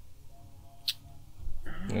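A lull in the talk filled by low outdoor background rumble, with a faint thin squeak-like tone early on and a single sharp click about a second in, before a man's voice starts near the end.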